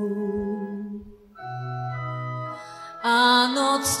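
Concert organ holding sustained chords: one chord fades out about a second in, then a new chord sounds with a low bass note under it. About three seconds in, singing voices enter loudly with vibrato.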